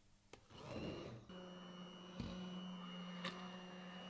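Immersion (stick) blender running in a pot of cooked carrots and broth, puréeing them into soup: a steady motor hum with a high whine that settles in about a second in. Two short clicks are heard as the blade head knocks against the pot.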